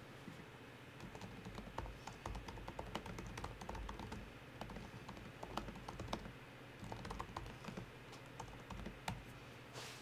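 Faint typing on a computer keyboard: irregular key clicks over a low steady hum, with a brief rush of noise near the end.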